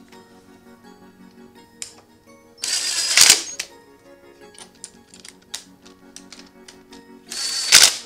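Cordless power driver running in two short bursts of about a second each, about three seconds in and again near the end, driving in rear brake caliper bolts, over steady background music.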